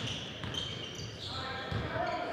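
A basketball being dribbled on a hardwood gym floor: repeated low thuds about half a second apart, ringing in a large hall.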